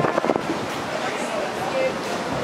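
Busy open-air ambience: a steady wash of noise with faint background voices, and a few short clicks about a fraction of a second in.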